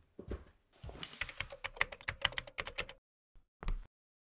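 Typing on a computer keyboard: a quick run of key clicks for about two seconds, then a pause and a couple of single clicks.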